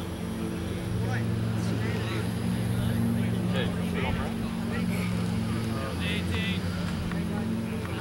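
Steady low drone of a running engine or motor, holding the same pitch throughout, under faint voices.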